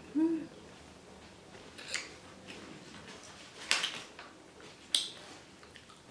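A woman's short hummed "mm" of enjoyment, rising and falling in pitch, just after the start. Then a few sharp, short clicks and smacks from eating, about two, three and a half and five seconds in.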